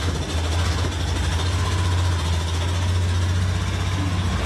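Motorcycle engine running steadily close by, a low even hum, as the bike moves off from a standstill.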